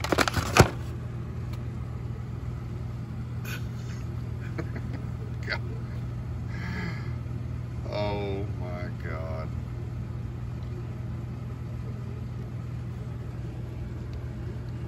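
Steady low hum of a store's background, with a few sharp clicks of handling in the first second and faint, indistinct voices in the background about halfway through.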